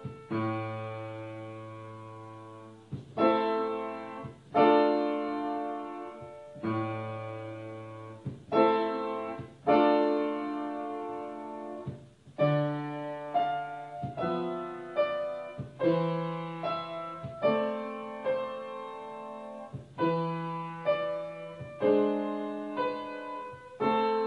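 Upright piano played at a slow pace: full chords struck one after another, each left to ring and die away, a few seconds apart at first and closer together later.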